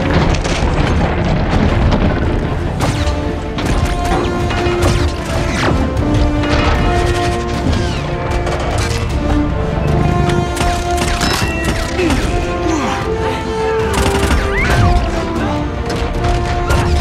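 Action-film battle soundtrack: a dramatic orchestral score under a dense run of explosions, crashes and metallic impacts from a robot fight.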